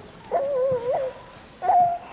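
A small child's high voice makes two drawn-out, wavering whining sounds, the second shorter and higher.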